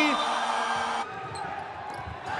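Basketball game arena sound: crowd noise after a made three-pointer, then, after a sharp drop in level about halfway through, quieter court sound with a basketball being dribbled on the hardwood floor.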